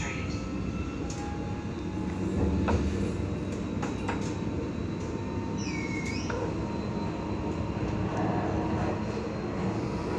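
Inside the cabin of a moving Alstom Citadis X05 light rail tram: the steady low running rumble of the tram on its rails, with a few light clicks and knocks. There is a brief high squeal about six seconds in.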